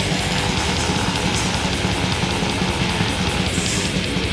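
Fast, heavily distorted black/death metal from a 1989 demo recording: guitars, bass and drums playing in a dense, unbroken wall of sound.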